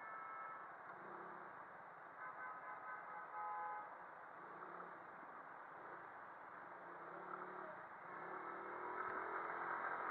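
Muffled traffic and road noise from a Suzuki Address 110 scooter creeping between stopped cars, its small single-cylinder engine running low. A few brief high tones sound about two to three and a half seconds in, and the noise grows louder near the end.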